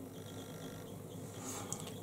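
Faint clicking as a small cosmetic pot and a makeup brush are handled, with a few clicks near the end.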